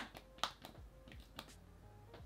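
A few faint, irregular clicks from the push-button end of a fragrance paintbrush pen being pressed to feed perfume gel to its brush.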